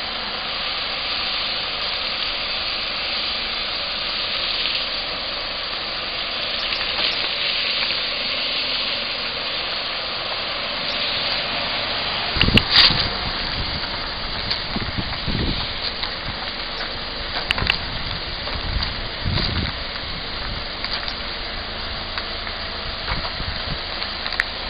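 Steady hiss of background noise. About twelve and a half seconds in comes a sharp knock, followed by irregular low bumps as the hand-held camera is moved.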